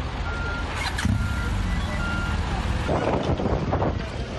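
A heavy vehicle's reversing alarm beeping three times, about a second apart, over a low diesel engine rumble.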